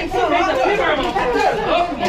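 Several people talking and shouting over each other in excited chatter.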